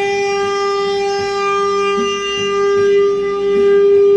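Alto saxophone holding one long, steady note.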